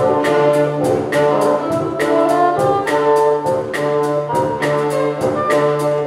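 Live mixed ensemble of strings, woodwinds and brass playing held chords over a sustained bass note and a steady beat of about two strokes a second.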